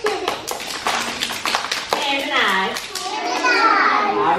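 Hand clapping: a quick run of claps, about five a second, for the first two seconds, followed by young children's voices.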